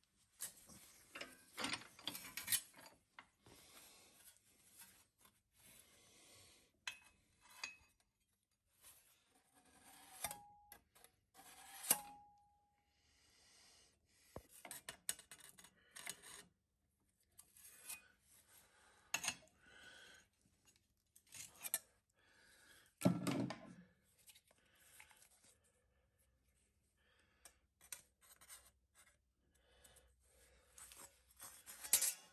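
Sheet steel scraping and clicking as it is handled in a vice-mounted steel-angle folding tool, and aviation snips clicking as they nick the edge of a 2mm steel offcut. The noises come in short, scattered bursts, with two brief ringing notes about ten and twelve seconds in and a heavier thump a little past twenty seconds.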